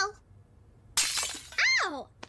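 A sudden crash like glass shattering about a second in, dying away within half a second. It is followed near the end by a short high voice sliding down in pitch.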